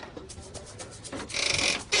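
A door being handled and opened: a few faint clicks, then a short scraping rub lasting about half a second near the end.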